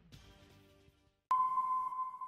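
A faint fading tail of sound, a brief silence, then a sudden steady electronic beep-like tone starting just over a second in and holding to the end. It is the opening of the newscast's logo transition sting.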